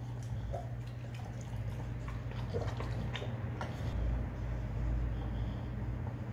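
An American bully chewing and smacking wet food taken off chopsticks: a few short wet clicks and smacks of the mouth, over a steady low hum.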